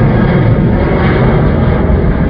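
Ryanair Boeing 737 twin-jet climbing away: a steady, deep jet engine rumble.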